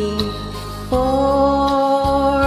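Instrumental backing track of a slow ballad between sung lines: sustained held chords over bass, moving to a new, louder chord about a second in.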